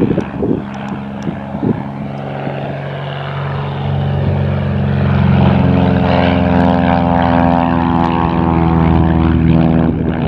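Single-engine propeller plane flying low, its engine drone growing louder about four seconds in as it passes close.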